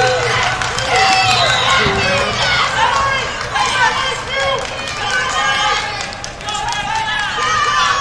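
Many voices at once, shouting and calling out over one another, from spectators and coaches around a wrestling mat, over a low steady hum.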